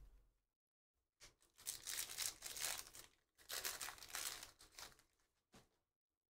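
A Panini Prizm football card pack's foil wrapper being torn open and crinkled, in two long crackly bursts, after a soft thump at the start.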